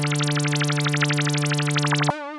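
FB-3200 software synthesizer, an emulation of the 1978 Korg PS-3200, playing its 'BAS: LP4 Raizor' bass preset. It holds a single low, buzzy note that pulses rapidly and evenly.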